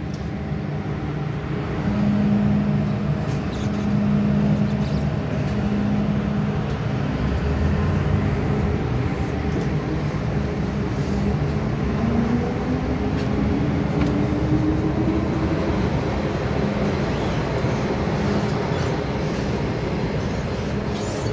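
MTR M-Train electric multiple unit heard from inside the car as it sets off from a station: a steady motor and running hum, then about twelve seconds in a whine that rises in pitch as the train accelerates.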